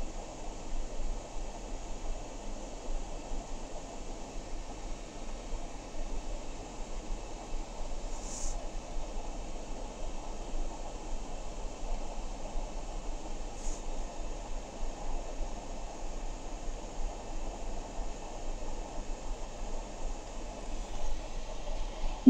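Steady background noise, a hiss over a low hum, with no speech. Two brief faint high chirps come about eight and fourteen seconds in.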